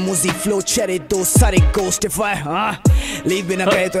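Hindi hip hop track playing: a male rapper over a beat with deep bass notes that slide down in pitch, several times.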